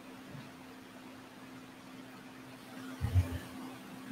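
Quiet room tone with a steady low hum, and a single dull low bump about three seconds in.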